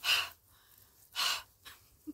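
A woman's two sharp, heavy breaths about a second apart, with a faint third just after: upset breathing close to tears.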